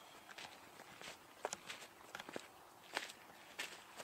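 Faint footsteps on a gravelly, rocky dirt track, a person walking steadily toward the microphone, each footfall a short crunch.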